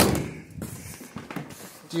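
A single loud thud at the 1963 VW Beetle's door, ringing out over about half a second, followed by faint rustling.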